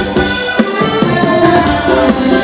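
Electronic keyboard playing an instrumental folk dance tune, sustained melody notes over a steady drum-machine beat.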